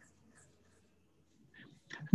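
Near silence: faint room tone on a call line, with a brief faint sound near the end.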